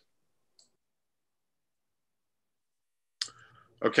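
Video-call audio that is dead silent for about three seconds, then a short sharp click with a little hiss, just before a man says "Okay" near the end.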